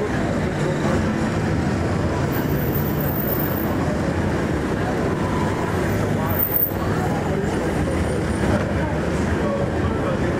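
Busy street ambience: steady traffic with the chatter of many voices.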